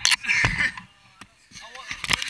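Handling noise from a camera being swung about and pressed against clothing: a sharp knock at the start, rustling and another knock about half a second in, then a short bit of voice near the end.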